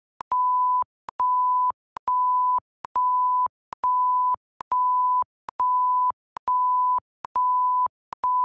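A censor bleep: a steady single-pitch beep tone, each about half a second long, repeated about once a second, nine times over. A small click comes just before and after each beep. These are video-editor beep sound-effect clips played back one after another.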